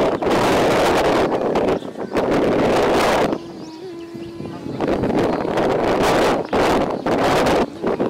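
Wind buffeting the microphone in two long gusts, with a quieter lull of a second or so in the middle.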